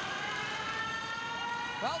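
Arena goal horn sounding a long, steady blast after a goal.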